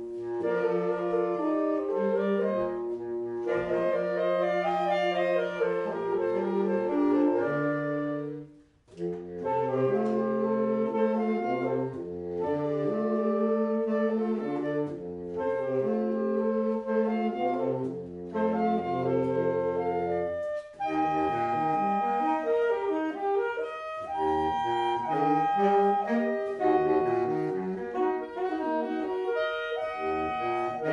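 Small saxophone ensemble playing a piece together, several wind parts moving at once. The music breaks off for a moment about nine seconds in, then carries on.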